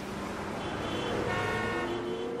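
A horn-like tone sounds from about half a second in and fades just before the end, over a steady low background rumble.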